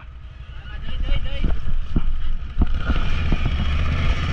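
Can-Am Renegade 1000 XMR ATV's Rotax V-twin engine running at low revs, a steady low rumble that grows stronger about a second in, with several sharp knocks and clicks scattered through it.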